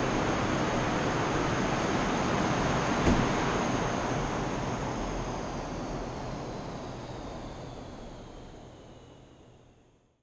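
Dust collector running steadily, then a click about three seconds in as it is switched off, after which it winds down and fades away, a faint whine falling in pitch as the fan slows.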